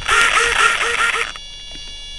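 A person laughing in a quick run of about six short breathy bursts that stops about 1.3 seconds in, over a steady high electronic whine.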